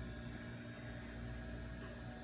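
Steady low electrical hum with faint hiss, unchanging throughout and with no distinct event.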